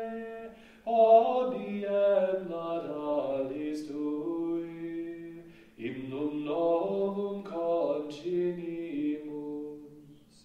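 Unaccompanied chanting of the Vespers office, sung on a few notes that move stepwise. There are two phrases, the first starting about a second in and the next near six seconds, each after a brief breath pause.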